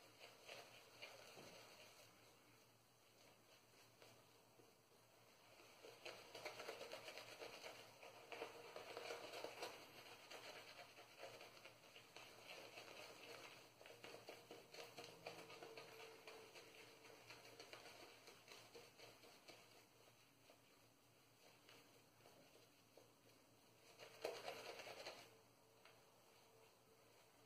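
Craving Shaving brush swirling shaving-soap lather over stubbly skin: a faint, quick, crackly brushing. It is busiest a few seconds in and swells in a short louder burst near the end.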